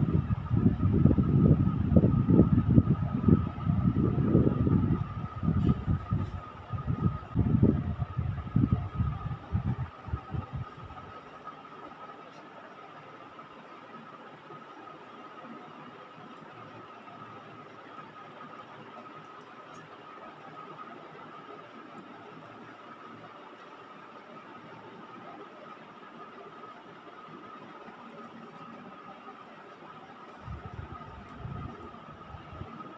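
Irregular low rumbling and buffeting on a phone's microphone for about the first ten seconds, then a steady faint hiss with a thin, high, steady hum underneath.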